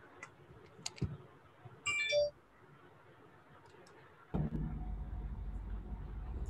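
A few faint clicks, then a short electronic chime of several tones about two seconds in, then a low rumbling noise that starts suddenly past the four-second mark, all over the hiss of an open video-call microphone.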